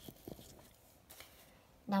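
Faint scratching of a ballpoint pen on a paper workbook page as a word is circled, with a few light clicks and paper rustles.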